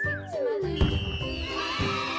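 Background children's music with cartoon sound effects: a falling whistle-like glide at the start, then a sharp hit a little under a second in, followed by a high, sustained shimmering ring.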